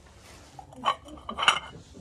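Glass and ceramic pub ashtrays clinking against each other as they are handled in a stack: two ringing clinks, just under a second in and again about half a second later, the second the louder.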